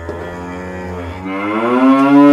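A cow mooing: one long moo that swells louder toward the end.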